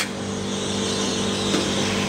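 A steady low hum with a faint hiss beneath it.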